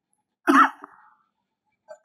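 A man coughing and clearing his throat: one short cough about half a second in, and another beginning just at the end.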